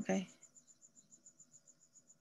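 Faint, steady high-pitched chirping in an even pulse of about eight chirps a second, typical of a cricket, after a brief spoken 'Ok' at the very start.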